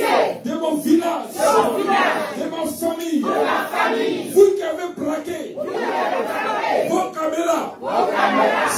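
A small congregation praying aloud all at once, many loud voices overlapping in shouted, fervent prayer.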